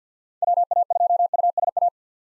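Computer-generated Morse code at 50 words per minute: a single steady beep keyed into rapid dots and dashes for about a second and a half, spelling the amateur radio call sign WA2USA.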